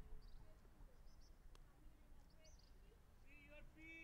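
Near silence: faint open-air background with a few faint high chirps and a faint distant call near the end.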